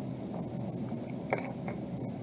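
Steady low room noise, with a light click about a second and a half in and a fainter one just after, from small nail-art supplies being handled on a tabletop.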